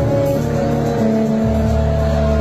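Live Bangla rock band playing an instrumental passage: acoustic guitar with long held notes over a deep bass line that shifts about one and a half seconds in.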